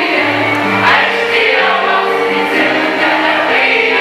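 A school choir of boys and girls singing a song in unison, accompanied by accordions, with sustained held notes moving through a melody.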